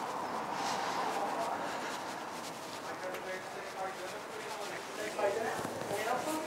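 Footsteps on a paved pavement over steady street background noise, with faint voices in the last few seconds.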